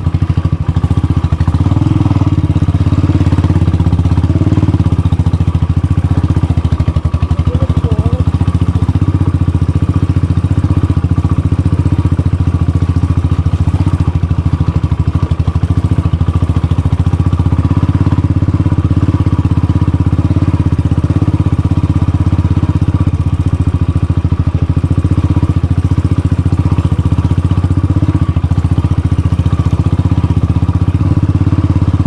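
Motorcycle engine running steadily at low speed with an even beat of firing pulses, held at a constant pace without revving while the bike is ridden over a rocky dirt track.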